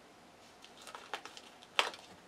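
Tarot cards being handled and dealt onto a cloth-covered table: a few faint ticks, then one sharper snap near the end as a card is laid down.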